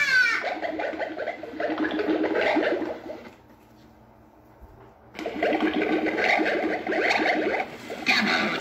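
Gemmy animated stirring-cauldron witch prop playing its spooky sound track from its built-in speaker, in two stretches with a pause of about two seconds in the middle.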